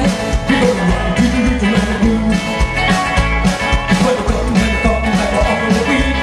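Live rockabilly band playing: electric guitar, acoustic guitar, upright bass and drums, at a steady driving beat.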